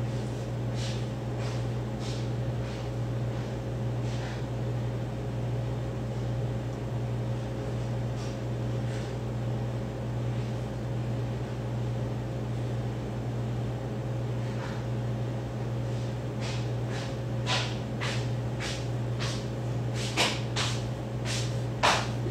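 Steady low hum of a running fan or kitchen appliance, with scattered light clicks and taps that come more often near the end.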